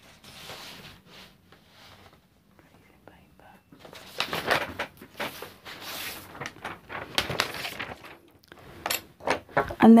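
Sheets of paper being handled on a tabletop: a run of paper rustles and light knocks begins about four seconds in. Tracing paper is being picked up and laid over a printed photo.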